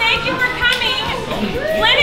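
A roomful of people chattering at once, children's voices among them.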